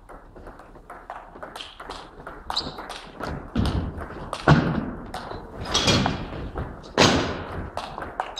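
Table tennis rally: the ball clicks rapidly off the bats and table, and the players' feet thud on the wooden floor as they move. The heaviest thuds come in the second half, and the sounds echo in the sports hall.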